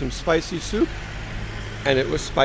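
Speech with a short pause in the middle, over a steady low hum of street traffic.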